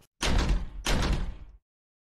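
Two heavy slams about two-thirds of a second apart, each a deep thud with a noisy tail that dies away over about half a second.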